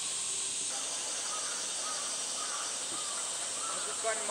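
Steady, high-pitched drone of a summer cicada chorus, with a few faint short calls over it partway through.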